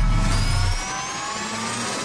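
Intro sound design: a deep bass boom fades out in the first second while a whine of several tones climbs steadily in pitch.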